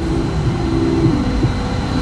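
Steady road and engine noise inside a moving car's cabin, a low rumble with hiss.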